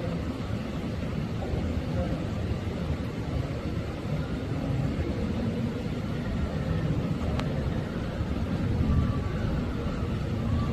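Steady low background rumble with faint, indistinct voices in the distance, and a single short click about seven and a half seconds in.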